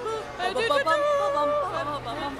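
A woman's high voice vocalizing in drawn-out, wavering sung notes without words.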